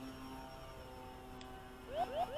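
Faint, steady hum of a radio-controlled floatplane's electric motor and propeller at constant throttle as the model climbs away after taking off from the water.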